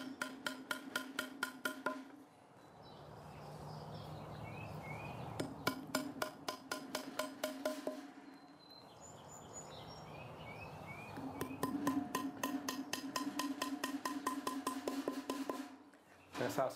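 Hammer tapping wooden mushroom-spawn dowel plugs into drilled holes in a hardwood log: three runs of quick light taps, about five a second, with short pauses between.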